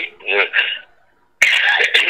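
A man speaking in short bursts, with a brief pause about a second in.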